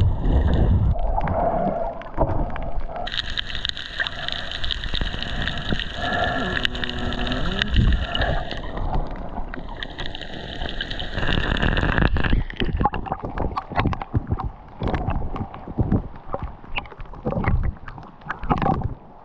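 Sound from a snorkeller's action camera in and at the sea: muffled rushing and bubbling water underwater, then from about two-thirds through a dense crackling patter of rain on the sea surface.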